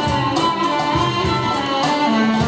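Turkish art music ensemble playing, plucked strings over a steady percussion beat.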